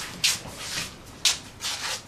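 A few short rustles and scuffs from people walking into a room, with clothing brushing and shoes scuffing. The loudest come about a quarter second in and just over a second in.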